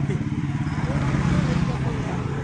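A motor vehicle's engine running close by: a steady low hum that swells slightly about halfway through.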